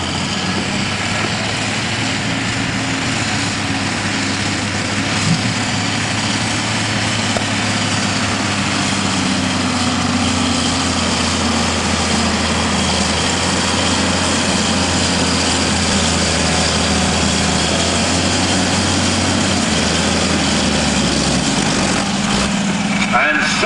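John Deere tractor's diesel engine running under heavy load as it drags a weight-transfer pulling sled. The engine note is loud and steady and falls away shortly before the end as the pull stops.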